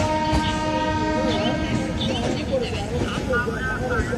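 Passenger coaches of a departing Rajdhani Express rolling past along the platform, with a steady rumble. A held train horn sounds through the first half and stops about two seconds in. Voices call out over the train noise.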